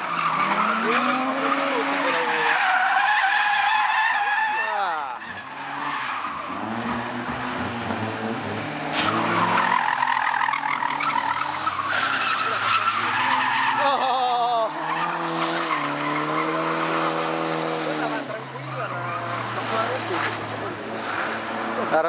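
A car drifting: its engine revving up and down again and again, with tyres squealing as it slides sideways.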